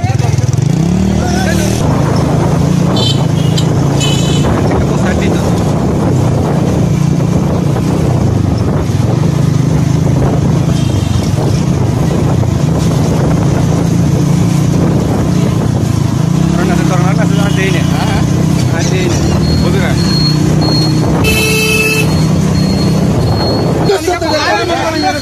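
Street traffic heard from a moving vehicle: continuous vehicle and road noise, with short horn toots about three seconds in and again near the end.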